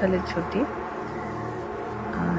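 A steady buzzing drone that holds one unchanging pitch, with the tail of a spoken word over it in the first half-second.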